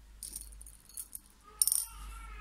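Pearl beads rattling and clicking together as fingers pick one out of the loose supply: three short bursts, the loudest near the end.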